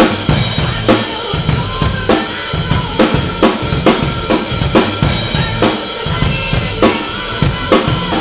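Dolphin acoustic drum kit played in a steady rock beat, with bass drum, Pearl snare and Paiste cymbal hits landing a few times a second. It is played along with a band recording whose sustained guitar and bass notes sit under the drums.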